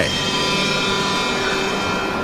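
A steady, sustained drone of several held tones, the kind of dark ambient pad used as a documentary score.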